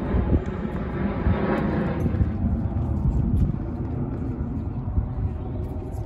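Steady low engine rumble from a passing motor, with a higher hiss that fades out over the first two seconds.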